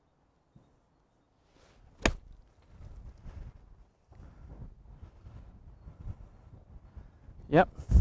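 A golf wedge striking the ball once: a single crisp click about two seconds in, from a 56-degree wedge pitch played off a dry lie under a pine tree. After the strike, a low rumbling noise runs on until a short spoken word near the end.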